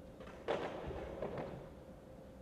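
A skateboard set down hard on the flat top of a brick ledge about half a second in, then its wheels rolling briefly over the rough surface with a few small knocks.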